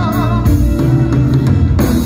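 Live blues band playing loud: electric guitar, keyboard, bass guitar and drum kit. A held note wavers with vibrato and ends about half a second in.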